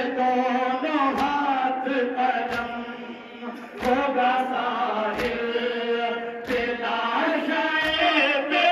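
Male voices chanting an Urdu nauha (Muharram lament) in unison, amplified through a microphone, with a sharp group slap about every 1.3 seconds: the chest-beating (matam) that keeps the nauha's beat.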